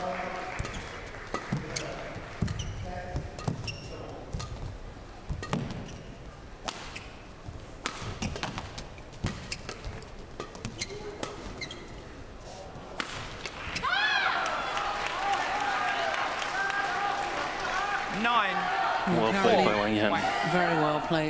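Badminton rally on an indoor court: sharp cracks of rackets striking the shuttlecock and thuds of footfalls, with high squeaks of court shoes growing louder and more frequent in the second half as the players lunge and turn.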